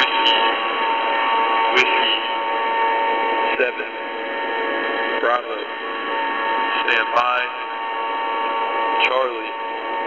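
High-frequency single-sideband radio reception: a steady bed of static hiss with several constant whistling carrier tones. Through it, a distant voice reads phonetic-alphabet letters and numbers of an encrypted Air Force Emergency Action Message, about one word every 1.7 seconds. A sharp click comes with several of the words.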